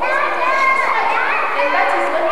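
Speech: a woman talking into a microphone, thin-sounding with no bass and hard to make out.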